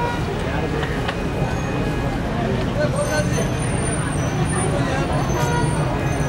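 Street ambience: steady road traffic with vehicle engines running and indistinct voices in the background.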